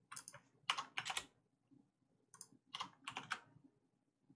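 Computer keyboard being typed on in short bursts of keystrokes: a quick run about a second in and another near three seconds.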